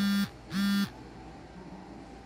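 Two short, identical buzzing tones, each about a third of a second long and about half a second apart, low-pitched and harsh.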